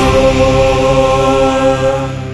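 A single long chanted vocal note held steady over a low bass drone, the drawn-out end of a short sung jingle; it stops at the very end.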